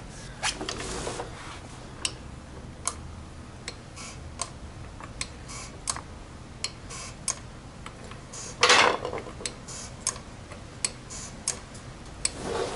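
Scattered light metallic clicks and ticks at an irregular pace from a Craftsman 3-ton floor jack's handle and pump mechanism being worked, with one louder, longer rustling clunk a little under nine seconds in.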